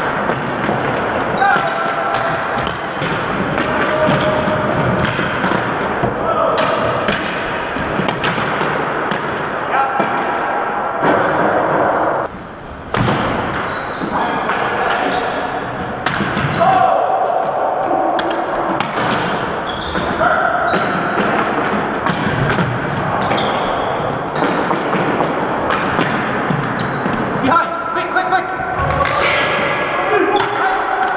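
Floor hockey play in a gymnasium: hockey sticks clacking against the ball, the floor and each other in many sharp, irregular knocks. Players' shouts and calls come in between.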